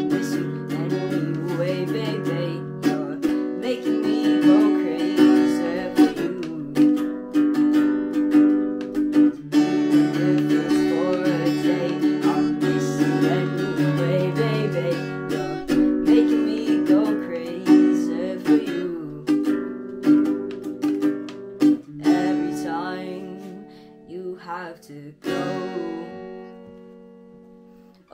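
Acoustic guitar strummed in a steady chord pattern, with a boy singing over it in places. About 22 seconds in, it thins to a few sparse strums that ring out and die away.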